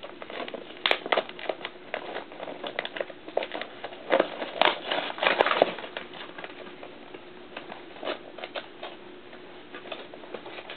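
Cardboard and plastic blister packaging of an action figure being opened and handled: irregular crackles and clicks, busiest about four to six seconds in, thinning out after.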